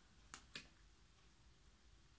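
Near silence: room tone, with two short faint clicks about a third and half a second in.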